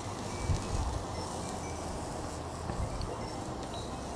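Bacon-wrapped filet mignon sizzling steadily on the grill grates of a charcoal kettle grill, the bacon fat crackling, with a few brief low rumbles.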